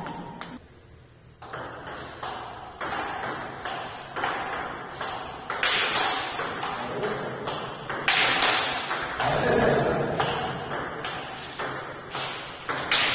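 Table tennis rally: the celluloid-type ball clicking off the rubber paddles and bouncing on the table in a quick back-and-forth, about two hits a second. Louder noisy stretches come and go, the loudest about eight seconds in.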